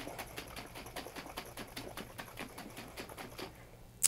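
Liquid sauce sloshing in a lidded glass mason jar shaken by hand, about six shakes a second, to blend it. It stops shortly before the end.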